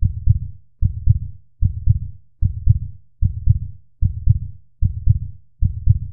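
Heartbeat sound effect: a steady lub-dub double thump about every 0.8 seconds, eight beats in all, deep and loud.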